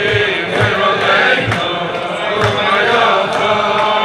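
A group of men singing a wordless Chassidic niggun together in unison, with low thumps keeping the beat.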